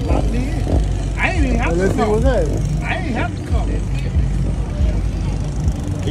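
A steady low engine rumble runs under unclear talking, with a voice over it from about one second to three and a half seconds in.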